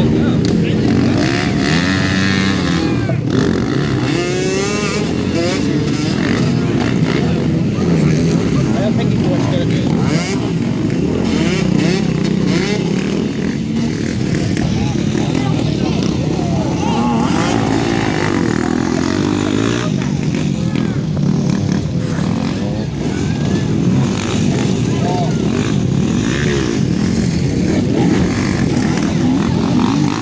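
Several dirt bike engines running and revving up and down as the bikes ride the course, the pitch rising and falling repeatedly throughout.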